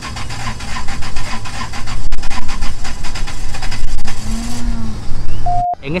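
Loud vehicle engine noise close by, rough and steady, ending in a short beep and a sudden cut near the end.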